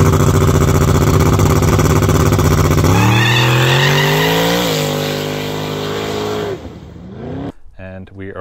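Turbocharged V8 in a small-tire drag pickup held at steady high revs, then launching and accelerating away with one gear change partway through, the sound fading as the truck pulls off down the road.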